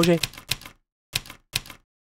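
Typewriter keys clacking, a string of separate sharp strikes in an uneven rhythm that stops just short of two seconds in.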